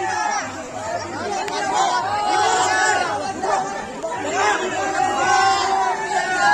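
Many voices talking and shouting over one another: crowd chatter.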